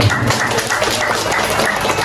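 Audience applause: many people clapping together in a dense, even clatter.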